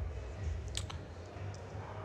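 A few keystrokes on a computer keyboard, with one sharp click a little under a second in and fainter ones after it, over a steady low hum.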